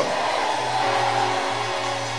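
Background music: sustained chords held steadily, with no beat, in a pause between spoken prayers.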